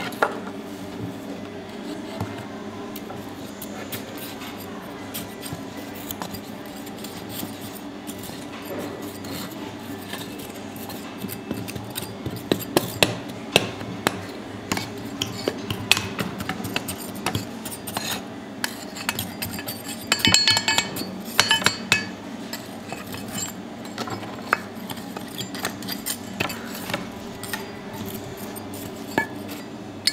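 Aluminium castings being dug out of red foundry sand with steel tongs: scraping in the sand and sharp metal knocks and clinks as the tongs grip and the castings strike each other, with a run of ringing clinks about two-thirds of the way through. A steady low hum runs underneath.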